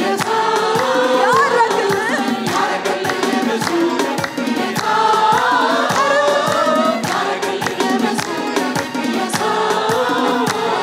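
A gospel worship choir and lead singers singing together over a steady beat.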